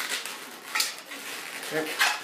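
Latex twisting balloons rubbing against each other and against the hands as they are squeezed and pushed into place, with a short sharper rub just under a second in.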